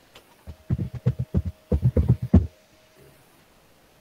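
Computer keyboard typing: a quick run of about a dozen dull keystrokes lasting about two seconds, heard through a video call's microphone.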